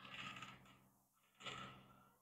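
Near silence: room tone, with two faint brief sounds, one just after the start and one about a second and a half in.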